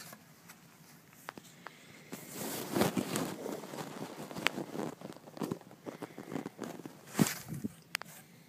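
Rustling and handling noise as cotton T-shirts and their cardboard box are moved about, with scattered light knocks. Quieter for the first two seconds; a sharp knock about seven seconds in.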